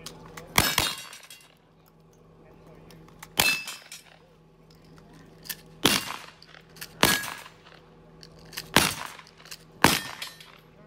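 Gunshots from cowboy action firearms: a quick pair about half a second in, then single shots every one to two and a half seconds, some followed by a short metallic ring from steel targets. Low voices between the shots.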